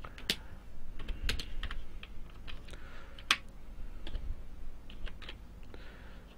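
Typing on a computer keyboard: irregular keystrokes, with one louder key strike a little past halfway.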